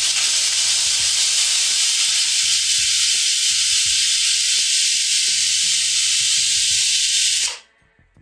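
Pressure cooker whistle: steam blasting out from under the weight valve in a loud, steady hiss that stops abruptly about seven and a half seconds in. This is the cooker's first whistle, the sign that it has come up to pressure.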